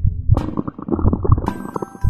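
Cartoon stomach-gurgling sound effect, a rapid bubbly rumble laid over a low regular beat. Near the end a few high ringing tones come in like a chime.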